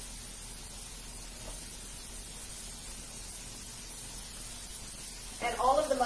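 Steady hiss of vegetables sautéing in two pans on a gas stovetop, with a faint tick about a second and a half in. A woman's voice starts near the end.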